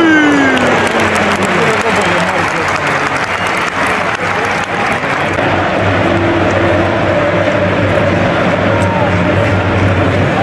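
Large football stadium crowd: a loud, continuous din of thousands of voices and clapping, with a falling groan of voices in the first couple of seconds as a shot on goal goes off.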